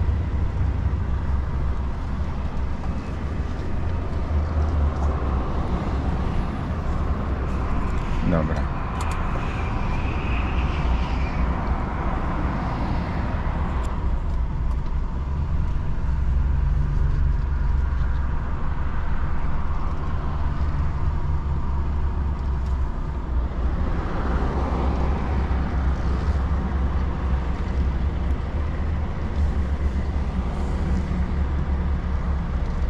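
Heavy truck's diesel engine heard from inside the cab, running with a steady deep rumble as the truck creeps along at low speed while parking.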